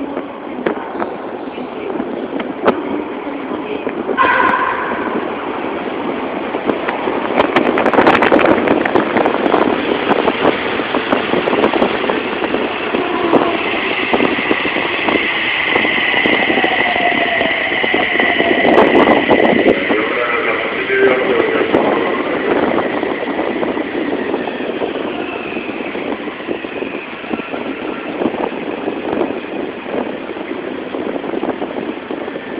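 Toei Mita Line 6300-series subway train arriving at an underground platform. It runs in from the tunnel with the noise of wheels on rails, loudest as the cars pass, and a steady high whine from about midway while it slows and comes to a stop.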